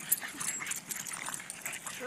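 Boston terriers moving about and scuffling, a scatter of quick clicks and rustles with one sharp tap near the start.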